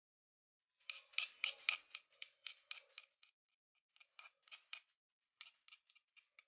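A metal spoon scraping sambal off a stone pestle and mortar (cobek and ulekan) in quick, short strokes. The scrapes come in three runs with brief pauses between them.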